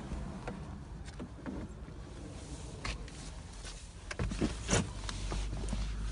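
Faint clicks and rustling as a person climbs into the driver's seat of an SUV, with a low steady hum coming in about four seconds in.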